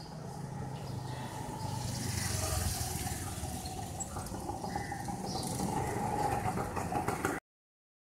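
A motor scooter's engine running as it rides along a lane, over a steady background of street noise. All sound cuts off suddenly near the end.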